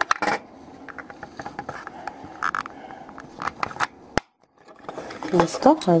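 Small hard-plastic toy parts clicking and tapping as a blue plastic door is pressed onto the white frame of a Playmobil toy fridge.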